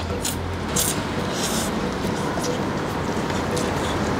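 A person slurping and chewing noodles, heard as short wet bursts now and then over a steady low background hum.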